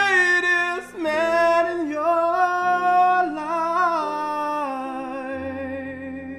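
Male solo voice singing long held notes with vibrato in a ballad, over grand piano accompaniment. The voice breaks off briefly about a second in, then sustains a line that steps down and fades out near the end while the piano keeps sounding.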